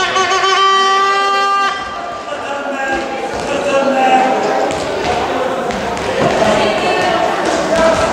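Sports-hall timing buzzer sounding one long steady tone that cuts off about two seconds in. After it come voices and shouting, echoing in the gym.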